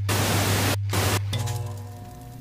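Television static sound effect: loud hiss that cuts out briefly a couple of times, over a steady low hum. About a second and a half in, the hiss gives way to a sustained musical tone that slowly fades.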